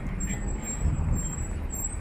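Road traffic at a wide city intersection: a steady low rumble of vehicle engines, with no voices.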